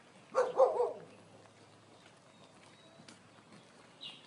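A dog barking twice in quick succession, about half a second in.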